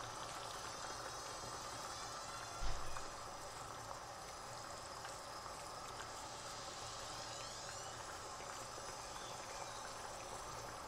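Faint steady background hiss, with one soft low thump a little under three seconds in.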